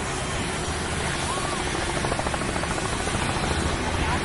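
Helicopter running steadily, a continuous low rumble of rotor and engine noise heard from close by.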